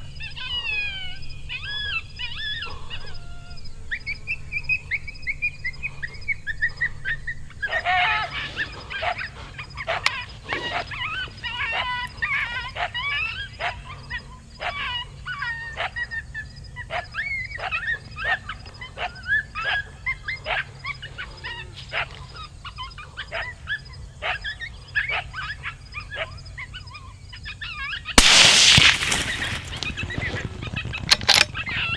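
A coyote barking and yipping in a long run of quick, high-pitched calls, many of them rising and falling. Near the end a single gunshot, the loudest sound, with a rumbling tail after it.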